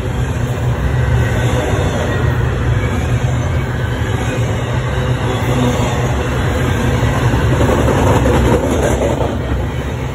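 Double-stack intermodal freight train passing close by: a steady, loud rumble of steel wheels on rail and rattling container well cars, swelling a little about eight seconds in.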